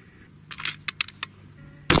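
A few faint clicks, then near the end a single loud .308 Winchester rifle shot from a Bergara B-14 HMR with a radial muzzle brake, its echo ringing on after the crack.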